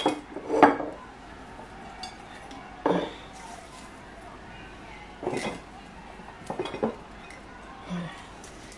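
A few scattered clinks and knocks of a stainless steel mixing bowl and glass mason jars being handled while sliced red onion is packed into the jars.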